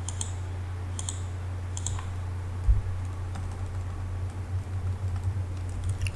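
Computer keyboard keystrokes: a few separate clicks in the first two seconds, over a steady low electrical hum. A single dull thump comes near the middle.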